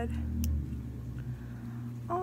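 A single sharp click about half a second in, from the switch or battery box of a light-up Christmas sweater being worked, which is not lighting up. A steady low hum runs underneath.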